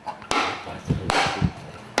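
Hollow wooden training bat struck against bare shins to condition the bone: a few sharp wooden knocks, the loudest about a second in.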